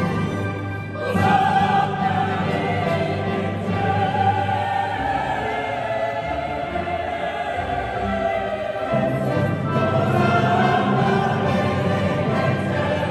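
Mixed choir singing classical sacred music with a string orchestra and French horns, in the echoing space of a large church. A new phrase enters about a second in, and the bass line drops lower for a few seconds midway.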